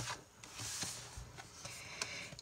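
A soft rustle of paper, a hand brushing across the pages of a colouring book, from about half a second in to just over a second in.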